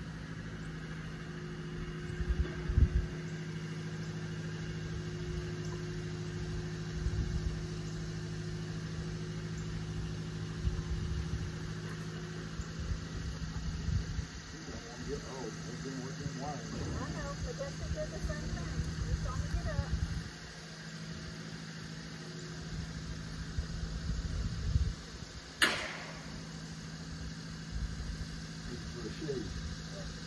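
An engine idling steadily with a low hum, with wind gusts on the microphone and one sharp click near the end.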